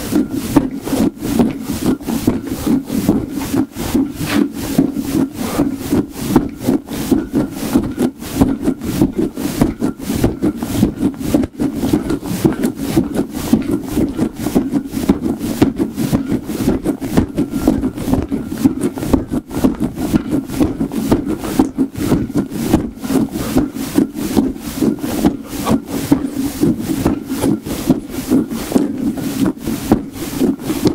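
Squishy ball rubbed and squeezed fast between the hands, close to the microphone: a steady run of rapid strokes, several a second.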